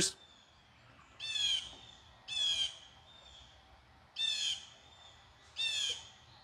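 A bird calling four times outdoors, each call about half a second long, one to two seconds apart.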